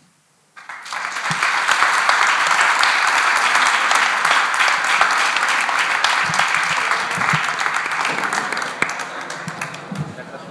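A room full of people clapping: the audience and the panel applaud. It starts suddenly about half a second in, holds steady, and thins out near the end.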